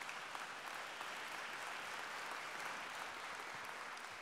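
Audience applauding, fairly faint, building in the first second and slowly fading out near the end.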